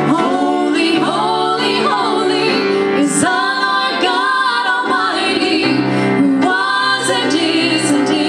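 Women singing a worship song into microphones, over sustained low accompaniment notes.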